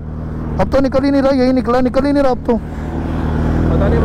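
Suzuki Hayabusa's inline-four engine idling steadily, growing a little louder near the end.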